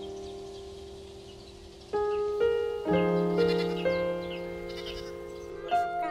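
Gentle piano music: chords ring and fade, with new notes struck from about two seconds in. A goat kid bleats near the end.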